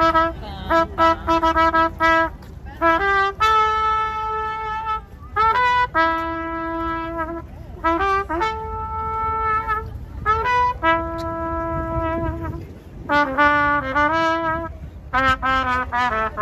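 Solo trumpet played live, a melody that opens with quick repeated notes, moves into long held notes, and returns to short quick phrases near the end.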